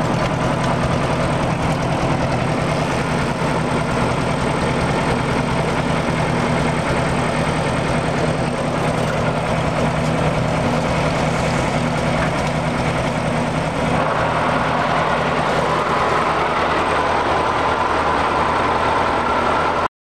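Massey Harris 333 tractor's four-cylinder engine running steadily at idle. About two-thirds of the way through, the low end fades and the sound turns thinner and brighter.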